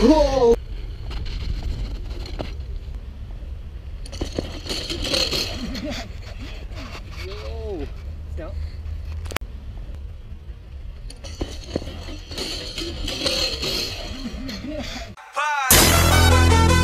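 Low rumble of wind and motion on a moving action-camera microphone during a bike ride on snow, with people calling out, two hissing stretches of tyres skidding on packed snow and one sharp click. Music comes in just before the end.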